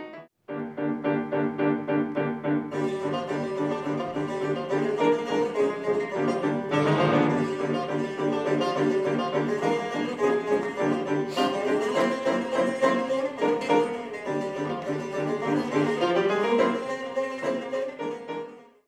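Instrumental music from an ensemble of Azerbaijani folk instruments (tar, kamancha and accordion) with grand piano, playing quick, busy lines. The sound drops out briefly just after the start, then carries on without a break.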